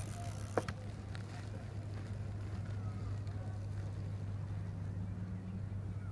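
A steady low hum with a single sharp click about half a second in.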